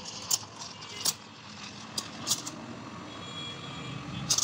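Espresso machine steam wand frothing milk in a stainless steel pitcher: a steady hiss broken by a few short, sharp spurts.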